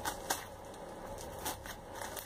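Clear plastic bubble-wrap packaging crinkling as a knife is unwrapped by hand, with a few short crackles, one about a third of a second in and two more around a second and a half.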